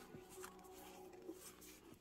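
Near silence: faint rustling and light ticks of Pokémon trading cards being handled, over a low steady hum.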